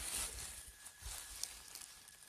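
Faint rustling and small crackles of dry pine needles and dead leaves being brushed aside by hand.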